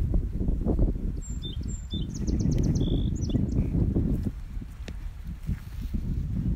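Wind buffeting the phone's microphone in a low, uneven rumble, with a small songbird's high chirps and a quick trill of about seven rapid notes in the middle.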